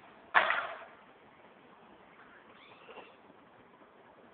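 Golden retriever giving one sharp, loud yelp about a third of a second in, then a faint high whine that rises and falls near the three-second mark.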